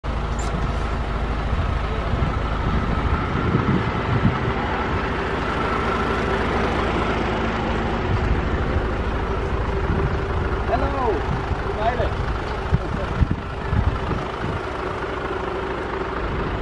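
Isuzu Forward truck's diesel engine idling steadily.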